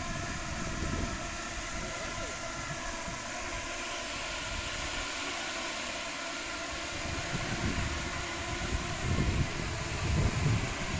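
A swarm of small light-show drones hovering and flying overhead, their propellers making a steady many-toned buzzing hum. Low rumbling noise underneath grows louder in the last few seconds.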